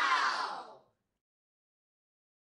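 Short animated end-card sound effect: a swishing sound with a slightly falling pitch that fades out within the first second.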